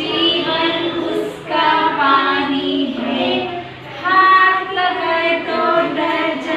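A group of young children singing a nursery rhyme in chorus, with women's voices singing along, in a run of short sung phrases.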